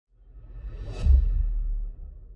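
Logo-intro sound effect: a whoosh that swells for about a second and lands on a deep low hit, which holds and then fades.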